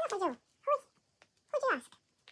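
A young girl's voice: three short high-pitched utterances, each falling in pitch.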